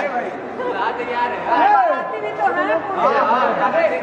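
Chatter: several voices talking over one another at once.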